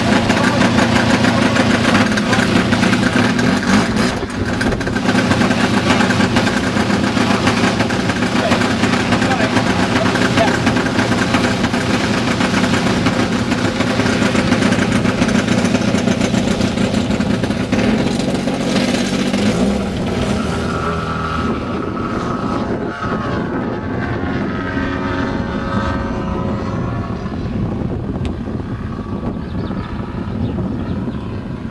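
The Desert Aircraft DA170 twin-cylinder two-stroke petrol engine of a 40% scale Yak 55 model aircraft runs loud and steady close by for about the first 18 seconds. It then fades as the plane takes off and flies away, its note rising and falling.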